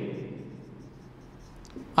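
Marker pen writing on a whiteboard, a faint scratchy stroking.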